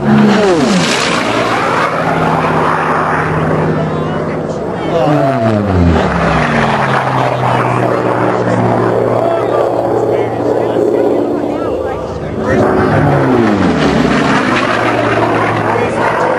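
Unlimited-class piston-engine racing planes going low and fast past the crowd, three passes in turn. Each engine note drops sharply in pitch as the plane goes by.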